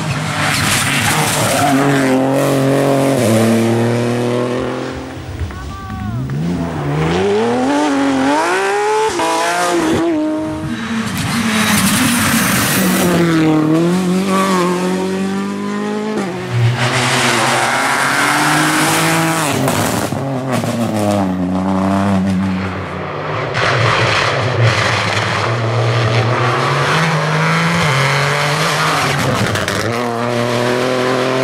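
Rally cars driven flat out on a tarmac stage, engines revving hard, the pitch climbing through the gears and dropping as the drivers lift and brake for corners, several times over.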